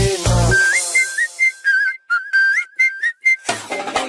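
A dance-pop track breaks down: about half a second in, the beat and vocals drop out and a whistled hook plays alone as a string of short notes that step and slide between two or three pitches. The full beat comes back in near the end.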